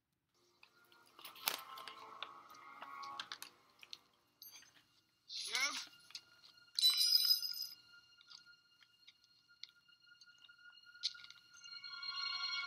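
Film soundtrack sound effects from a creature-attack scene with no music: scattered clicks and clatter, a rising wail about five and a half seconds in, a louder crash about a second later, then a steady high ringing tone.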